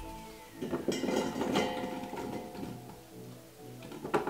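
Background music, with chopped zucchini pieces tumbling from a glass bowl into a stainless-steel pot for about a second and a half, starting about half a second in.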